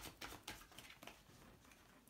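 Faint soft taps and rustles of tarot cards being drawn from a deck and laid on a table, mostly in the first second, then near silence.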